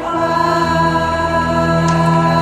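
Live worship music: a woman singing a slow, held line with a band and backing voices, with a low bass note coming in about half a second in.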